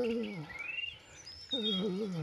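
The end of a man's falling voice, then a bird chirping with a short rising call and a few faint high chirps. About one and a half seconds in, a man's voice starts again, drawn out and wavering in pitch.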